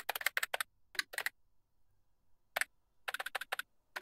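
Computer keyboard typing: short runs of quick keystrokes separated by pauses of up to about a second and a half.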